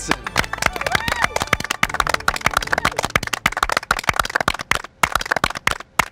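A small group of people clapping, thick and rapid at first, thinning to a few scattered claps near the end.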